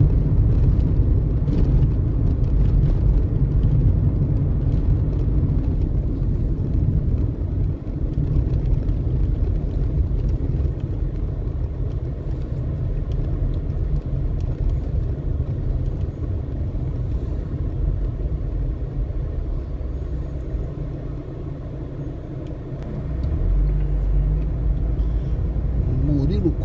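Steady low rumble of a car's engine and tyres heard from inside the cabin while driving in traffic; it eases a little about twenty seconds in and swells again near the end.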